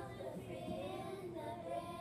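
A small group of young children singing unaccompanied, echoing back a sung line.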